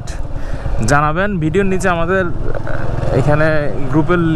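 Motorcycle engine running steadily while riding, with a person's voice speaking over it twice.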